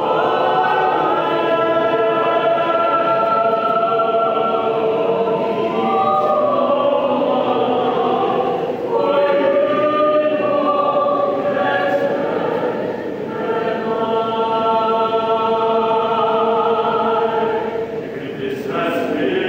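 Mixed choir of men's and women's voices singing long, held chords, with brief breaks between phrases about nine and thirteen seconds in.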